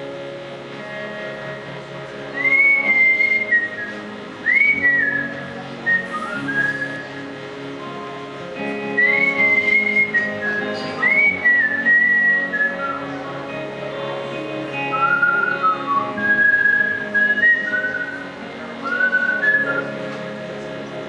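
A man whistling a melody into a vocal microphone in phrases of notes that slide up and then hold, starting about two seconds in, over steady guitar chords from an electric and a second guitar: a whistled instrumental break in a live song.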